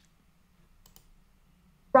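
Near silence broken by a faint click at the start and two faint clicks close together about a second in, like a computer mouse being clicked; speech begins at the very end.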